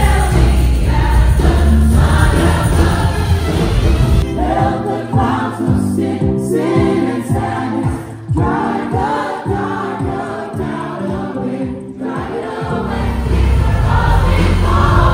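A large gospel choir singing with instrumental backing. The heavy bass drops away about four seconds in, leaving the voices over lighter accompaniment, and returns near the end.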